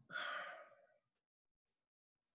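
A person's audible breath, lasting about half a second right at the start, followed by near silence.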